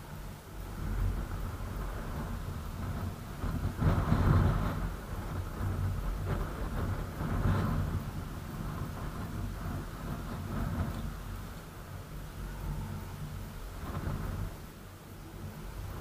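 Wind buffeting the microphone: a low, gusting rumble that swells and eases unevenly, loudest about four seconds in.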